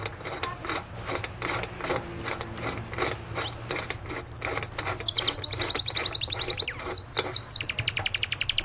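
Light, irregular metal clicking of a nut being turned by hand onto the splined transmission shaft of an Easy Amazonas washing machine. Over it a songbird sings: a brief chirp at the start, then rapid high trills of repeated notes from about three and a half seconds in, the loudest sound.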